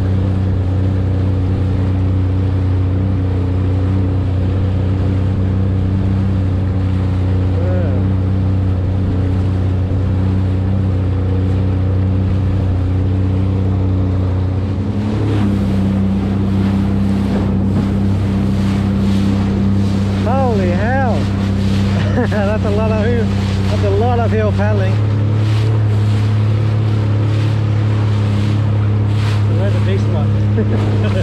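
Jet ski engine running steadily at cruising speed. About halfway through the engine note shifts, and the hull starts slapping and throwing spray as it crosses ocean swell.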